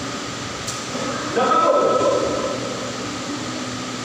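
A man's voice through a microphone in a slow, drawn-out delivery, louder from about a second and a half in, over a steady background hum.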